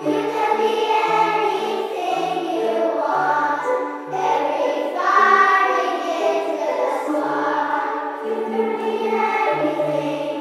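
Children's choir singing a song, accompanied by strummed ukuleles and wooden xylophones played with mallets, over a low bass line that steps from note to note.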